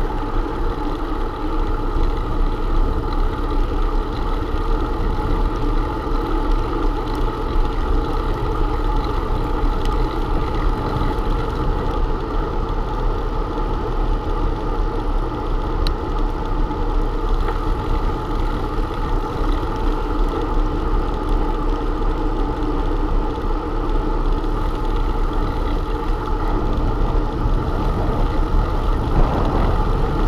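Steady wind and road noise on a bicycle-mounted camera's microphone while riding, strongest in the low end and unbroken throughout.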